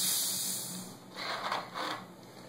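Cap being twisted off a just-shaken two-liter plastic bottle of warm baking-soda water, with gas hissing out for about a second and fading, then a few short plastic scuffs as the open bottle is handled.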